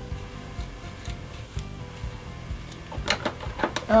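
Background music with a steady low beat. Near the end come several quick scratchy strokes: a comb being drawn through long, stretched, detangled natural hair.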